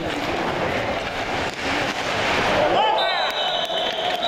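Live game sound from a bandy match on an indoor rink: players calling out, with scraping and knocks of skates, sticks and ball on the ice. A few sharp knocks come near the end.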